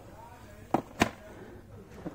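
Two short, sharp clicks about a quarter of a second apart, from a hand handling a cardboard model-aircraft box, over quiet shop room tone.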